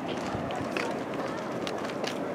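Indistinct chatter of people nearby, with scattered short clicks and scuffs like footsteps on gravel.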